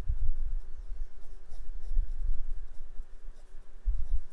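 Pen writing on a paper notebook page, a run of short scratching strokes over an uneven low rumble.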